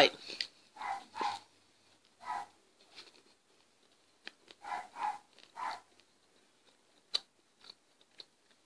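A dog barking outside, about six short barks in twos and threes, over soft chewing of a bite of candy bar with a few small clicks.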